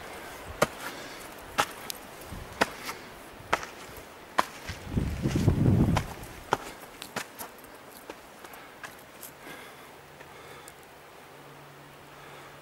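Footsteps on a dirt and stone path, about one crisp step a second, growing fainter after the first seven seconds. A low rumble on the microphone about five seconds in.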